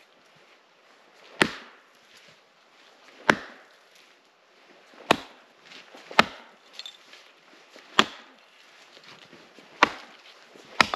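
Axe chopping into a frozen fir trunk: six sharp strikes, one every one to two seconds. The wood is frozen sapwood, which makes it hard chopping.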